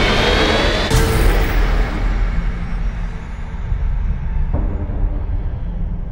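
Dark trailer score and sound design: a deep, sustained rumble left by a booming hit, struck again about a second in and once more, more softly, past four seconds in, slowly fading.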